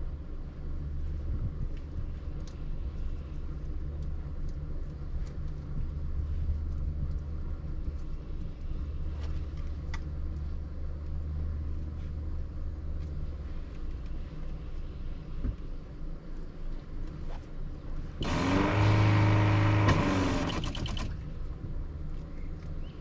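A steady low rumble with a few light clicks, then a louder motor whir with a hiss that comes on abruptly about 18 seconds in and cuts off about three seconds later.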